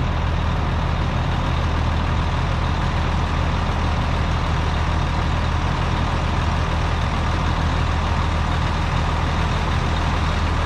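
Heavy diesel engine idling steadily at an even speed.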